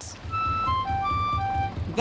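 A short melody of clear single high notes, like a whistle or glockenspiel tune, played over a small boat engine chugging at about six beats a second.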